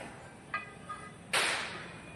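A mason's hand tool scraping wet cement along a stone strip: a light scrape with a faint ring about half a second in, then one loud, sharp swipe about a second and a half in.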